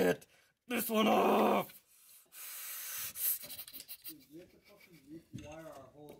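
A man grunting with strained effort about a second in, then a breathy exhale and low, wavering mumbling while he works a stubborn plastic wiring-connector clip.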